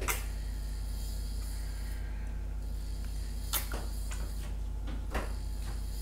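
Steady low background hum with three brief clicks spread through it, from a plastic squeeze bottle of acrylic paint being handled and squeezed while pouring lines onto a canvas.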